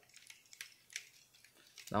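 Plastic parts of a Transformers Titans Return Voyager Megatron toy being handled and adjusted, with a couple of faint clicks.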